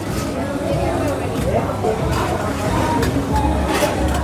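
Busy restaurant chatter with music in the background, and a few light clinks of metal serving tongs against steel buffet trays.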